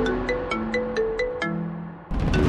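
Smartphone ringtone playing a quick melodic tune of bright, clear notes, about four a second, for an incoming call. It fades toward the end.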